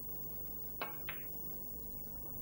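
A snooker cue tip striking the cue ball, then the cue ball clicking into the black about a third of a second later: two sharp clicks.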